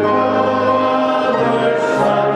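Choir singing slow, held chords that move to new notes about once a second, with a brief sung hiss near the end.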